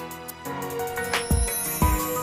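Television channel ident music: held chords with two deep drum hits, one about a second and a third in and one near the end. A high whoosh rises through the second half.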